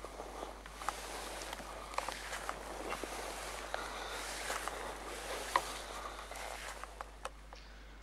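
Grass and clothing rustling and scuffing as a person crawls on knees and elbows through short cut grass, with scattered small clicks.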